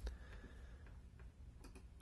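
Near-silent room tone with a single computer mouse click at the start and two faint clicks near the end.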